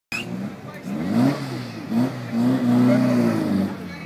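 Air-cooled flat-four engine of a VW bay-window bus revved hard for a burnout: two short rising revs, then a longer one held for over a second before it drops away near the end.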